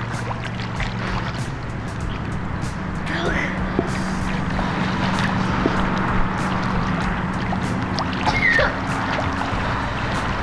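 Water splashing and churning as a child swims fast across a pool in a race.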